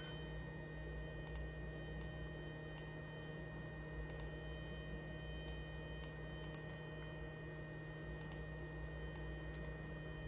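Scattered single clicks from a laptop being worked, about one a second at irregular intervals, over a faint steady low hum.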